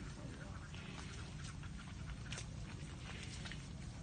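Water buffalo grazing, tearing and chewing grass: faint, scattered crisp clicks over a low steady rumble.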